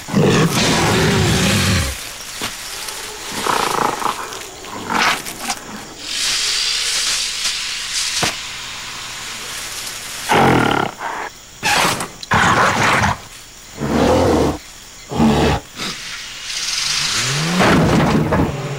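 Gorillas roaring and grunting in a series of loud separate calls, one in the first two seconds and a run of them in the second half, over jungle ambience.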